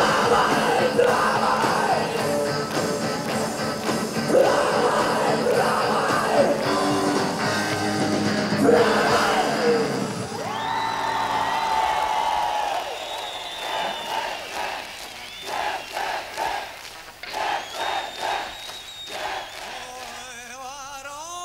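A rock band playing live with a singer, loud and dense, the song ending about halfway through. After it come a few long held high tones and short irregular bursts of crowd shouting.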